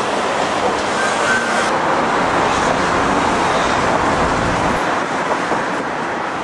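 Steady road-traffic noise from passing cars.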